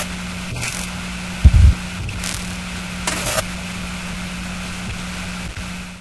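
Glitch-style intro sound design: a steady static hiss over a low electrical hum, broken by short crackling bursts and one deep boom about one and a half seconds in.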